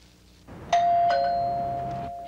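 Two-note 'ding-dong' doorbell chime. A higher note sounds about two-thirds of a second in, then a lower note follows, and both ring on and slowly fade.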